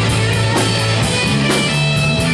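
Live rock band playing: electric guitars and a drum kit, with a steady beat of about two drum hits a second under sustained guitar notes.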